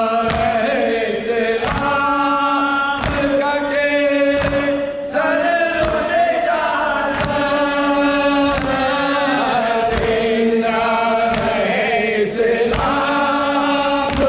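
Male voices chanting a nauha, a Shia mourning lament, one lead voice over a microphone with the group answering, while the mourners beat their chests in unison (matam), a sharp slap about every 0.7 seconds keeping the rhythm.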